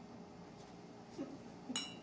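A single light clink of a ceramic dye mug, with a short ringing tone, near the end, after a couple of faint ticks.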